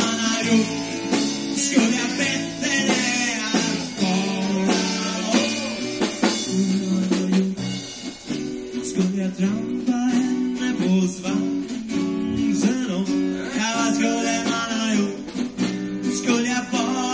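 A live band playing a song, with guitar and held chords over a drum kit, heard through an amateur cassette recording made with a portable recorder and microphone.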